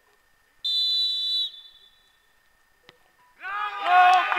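A referee's whistle blown once, a shrill steady note lasting just under a second, signalling the free kick. About two seconds later the ball is struck with a single short thud, and players' shouts rise loudly near the end.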